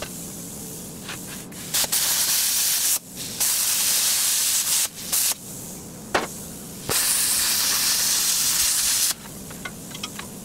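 Metal-cutting torch hissing in loud bursts of one to two seconds as its cutting jet is switched on and off: three long bursts and a short one, over a quieter steady hiss. A single sharp knock comes a little after six seconds.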